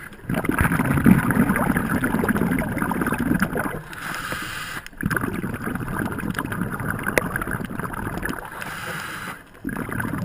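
A scuba diver breathing through a regulator, heard underwater: two long exhales of rumbling, crackling bubbles, each followed by a short hissing inhale, one about four seconds in and one near the end.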